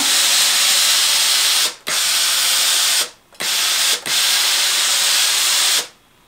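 Tefal Express Anti Calc steam generator iron puffing out steam in vertical-steaming mode: a loud, noisy hiss in four bursts, broken by short pauses about two, three and four seconds in.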